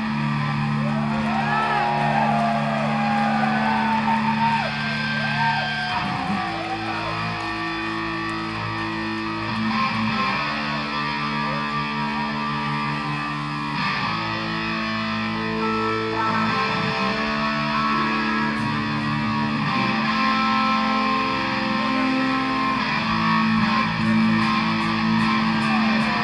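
Live rock band playing an instrumental passage: electric guitar through effects, with swooping, bending notes in the first few seconds, over long held low notes that change every few seconds.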